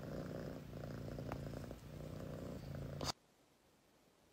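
A domestic cat purring softly, in a few stretches with short breaks, cutting off suddenly about three seconds in.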